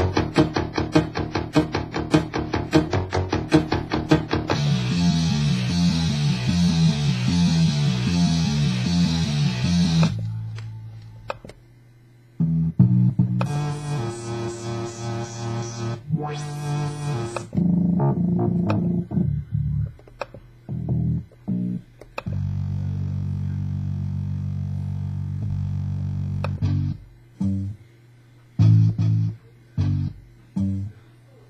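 Stock music loops auditioned one after another from a Maschine Studio through studio monitors: a steady rhythmic loop that changes to a different pattern about four seconds in, then from about ten seconds on a string of short snippets that each play briefly and cut off suddenly. The loops have plucked, guitar-like and bass sounds.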